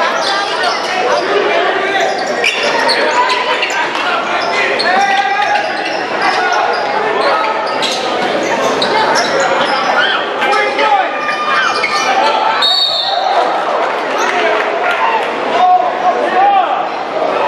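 Basketball dribbling on a hardwood gym floor amid shouting players and crowd voices, echoing in a large gym. A short high referee's whistle sounds about three-quarters of the way through.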